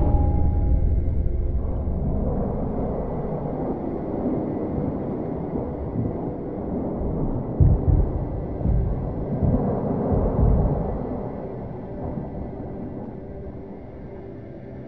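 Slowed-down sound of a pistol and a revolver fired underwater: a sudden boom that stretches into a long, deep rumble. The rumble swells again about eight and ten seconds in, then fades.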